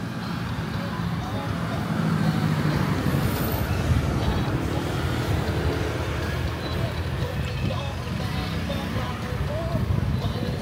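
Street ambience of road traffic passing close by, swelling from about two seconds in, with people's voices in the background.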